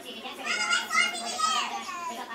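A young girl's high-pitched, wavering vocal sound, a squeal or sing-song voice without words, lasting about a second and a half.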